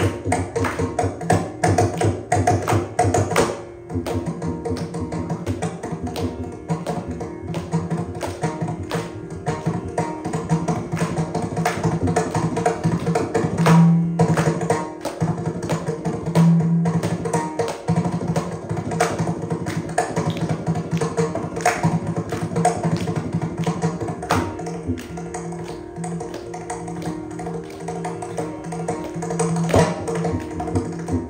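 Mridangam played solo in rapid strokes against a steady drone, a Carnatic tani avartanam in adi tala.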